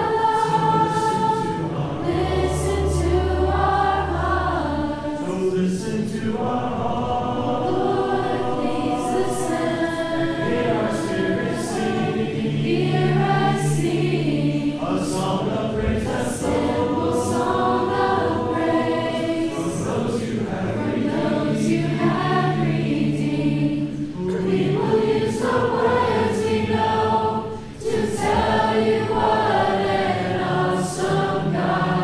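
Live worship music: a group of voices singing the refrain of a slow worship song over band accompaniment with sustained bass notes and cymbal strokes.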